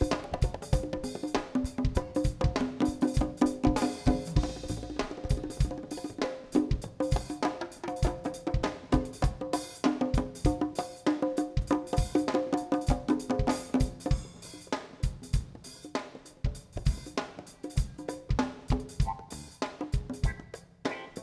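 Live jazz band playing, with the drum kit and hand percussion keeping a busy, steady beat under held pitched notes; the held notes drop away in the last few seconds, leaving mostly drums.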